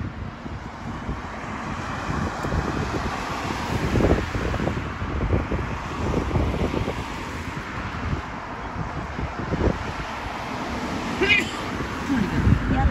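Wind buffeting the microphone in irregular low rumbling gusts, over the sound of car traffic on the road alongside.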